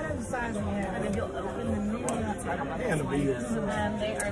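Indistinct talking and chatter from people at a table, with no other distinct sound.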